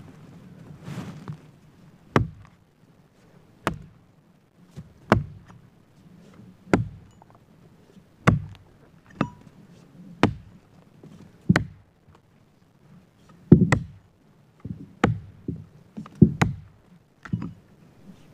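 Axe chopping into wood: a dozen or so sharp strikes, about one every second and a half, coming a little quicker near the end.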